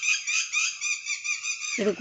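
A bird chirping rapidly and steadily, about five high notes a second.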